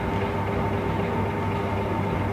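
Steady mechanical hum with a few faint steady tones under it, unchanging: room background noise.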